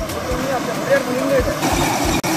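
Outdoor field sound: a steady rush of flowing water with people's voices talking over it.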